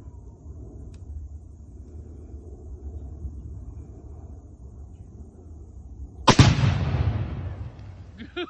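A tannerite charge in a beaver dam set off by a rifle shot about six seconds in: one sharp blast with a rumbling tail that fades over a second or so.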